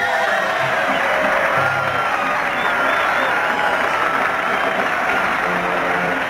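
Soundtrack music over a large crowd cheering and applauding, steady and loud throughout.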